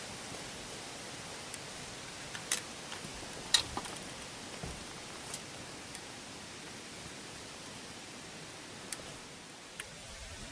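A few scattered sharp crackles of dry leaves and twigs, the loudest about three and a half seconds in, over a faint steady hiss.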